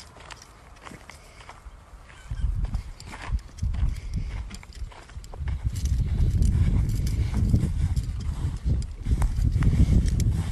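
Footsteps of someone walking through dry grass, with a low rumble that starts about two seconds in and grows louder halfway through.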